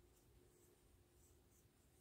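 Near silence: room tone with faint, soft rustles of yarn being drawn through stitches by a crochet hook.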